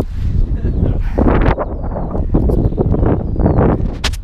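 Gusty wind on a small action-camera microphone: a constant low rumble with several louder gusts, and a man's short laugh near the start.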